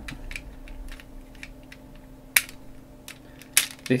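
Plastic and diecast parts of an Omega Megazord toy clicking and clacking as its arms are worked out during transformation: a scatter of small clicks, with two sharper clacks about two and a half and three and a half seconds in.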